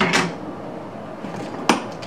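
Rummaging inside a soft tool bag: a brief rustle as the hand goes in, then a sharp click about one and a half seconds in as a laptop charger and its cable are lifted out.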